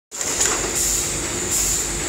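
Automatic eraser pouch packing machine running, with its chain conveyor and pneumatic pushers giving a steady mechanical noise under a constant high hiss, and a light click about half a second in.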